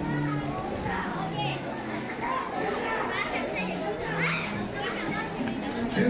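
Children shouting and playing in a crowded outdoor swimming pool, many high voices overlapping.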